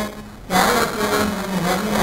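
A man's voice lecturing through a podium microphone, with a short pause about half a second in before he carries on.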